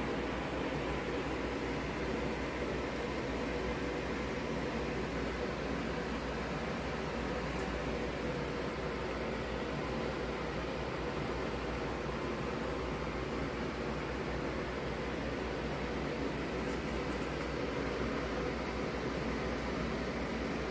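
Steady background hiss with a low hum, like a running fan or air conditioner, unchanging throughout.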